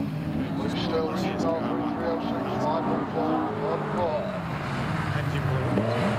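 Several autograss race car engines running at fairly steady revs, their pitch wavering a little and firming up near the end. A commentator talks over them.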